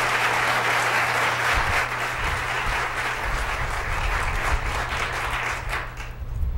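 Audience applause from a seated crowd, thinning into scattered claps and dying away near the end.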